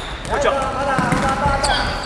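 Futsal ball thuds and players' shoe squeaks on a wooden sports-hall floor during play. A voice calls out with one drawn-out, steady-pitched sound in the middle.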